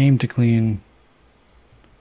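A man's voice for two short syllables at the start, then faint computer keyboard typing and clicks.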